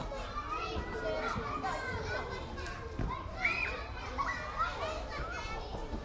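A crowd of schoolchildren at play: many overlapping children's voices calling and shouting at once, with one high squeal about halfway through.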